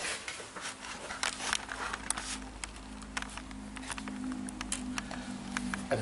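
Scattered light clicks and taps of a long metal straightedge and a glass strip being set down and lined up on a leaded glass panel, over a steady low hum.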